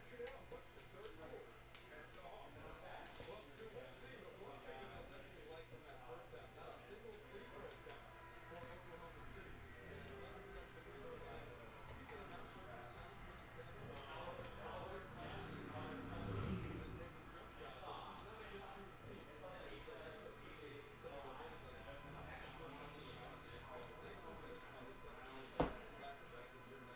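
Quiet handling of trading cards: soft slides and light clicks of cards against plastic sleeves and top loaders, under a faint low voice. One sharper click comes near the end.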